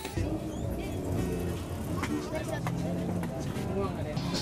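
Voices over background music, with street traffic noise beneath.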